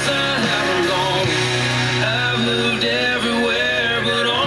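Country song playing on an FM radio station.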